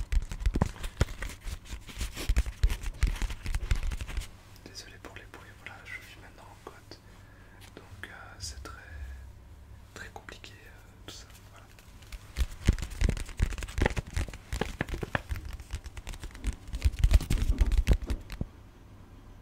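Close-miked ASMR tapping: dense runs of quick taps and clicks, with a quieter stretch of soft whispering in the middle before the tapping picks up again.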